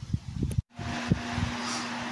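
Electric fan running with a steady hum over an even rush of air, starting after a sudden cut about half a second in; before the cut, a brief low rumble and handling knocks.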